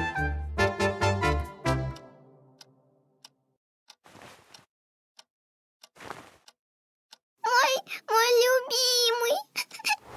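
A short music cue dies away over the first two seconds, followed by near quiet with a couple of faint soft sounds. From about seven and a half seconds, a cartoon fox girl's voice laughs in several short bursts.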